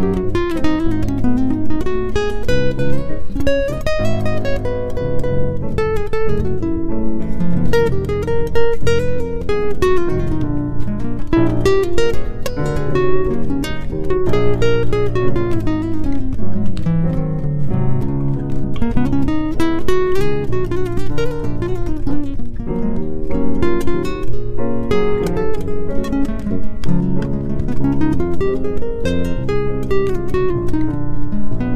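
Music led by acoustic guitar, plucked and strummed, with a melody line that rises and falls over it.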